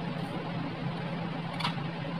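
A steady low hum under an even hiss, with one faint click near the end.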